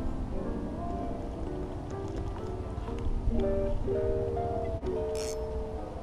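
Old-school hip-hop instrumental background music: a piano-like melody of held notes over a steady bass beat. A brief hiss cuts in about five seconds in.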